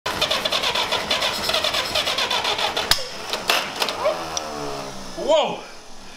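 GAZ-M1's four-cylinder flathead engine, primed with fuel poured into the carburettor, runs briefly in a rapid, even beat and dies about three seconds in with a sharp pop. Men's voices and laughter follow.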